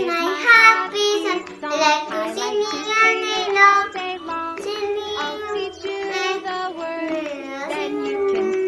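A young girl singing a cheerful children's song over a backing music track.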